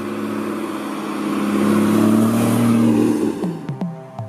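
Porsche Cayman GTS with its flat-six engine driving past. The engine sound builds to a peak about two to three seconds in, then fades away as music comes back in.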